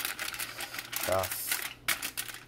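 Aluminium foil crinkling and crackling in irregular clicks as it is folded by hand over a fish packet. A brief vocal sound comes about a second in.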